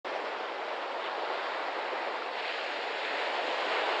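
Steady rushing of sea water, an even wash of water noise without breaks.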